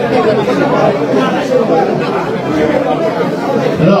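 Many people talking at once: overlapping crowd chatter, with no single voice standing out.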